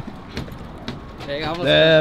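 A man's voice: after a quiet first second with a couple of faint clicks, a loud, drawn-out word with a held, steady pitch near the end.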